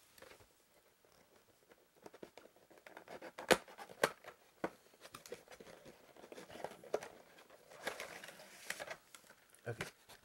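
Plastic packaging of a trading-card box being handled off-camera: irregular crinkling and tearing with several sharp clicks and taps, starting about two seconds in.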